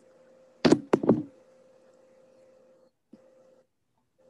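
Three quick knocks or bumps close to a microphone, about a second in, over a faint steady hum.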